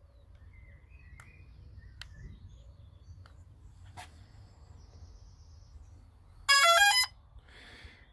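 DJI Phantom 3 Standard quadcopter powering up: a few faint clicks, then about six and a half seconds in a short, loud start-up tune of stepped electronic beeps, climbing in pitch, played through its motors to signal that the aircraft has booted.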